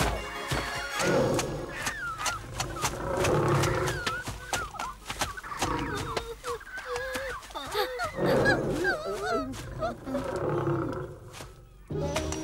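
Cartoon creature sound effects: short, wavering squawk-like calls with scattered quick taps, over background music, dropping quieter near the end.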